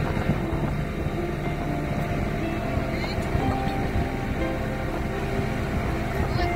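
A small boat's engine running steadily as the boat moves along the shore, with music playing alongside.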